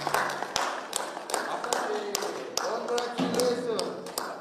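A few people clapping their hands after a performance: sparse, irregular claps, a few per second, with voices speaking over them.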